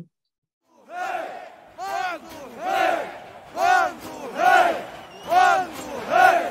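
A crowd of protesters chanting in unison, starting about a second in: a rhythmic shout repeated roughly once a second, each one rising and falling in pitch.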